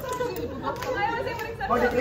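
Overlapping chatter of several people talking at once.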